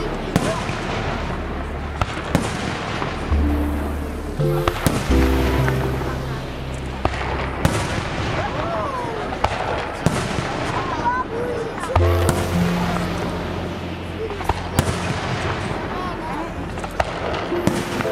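Aerial fireworks shells bursting, a sharp bang every couple of seconds over continuous crackle. Music with long sustained notes plays underneath.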